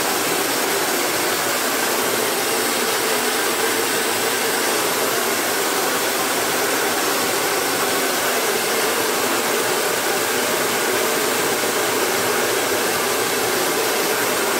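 Handheld electric hair dryer running steadily, a constant rush of blown air as it dries long hair.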